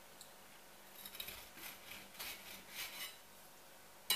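A kitchen knife sawing through a loaf of gluten-free buckwheat bread with a crisp crust, heard as faint strokes at about two or three a second, from about a second in until near the end.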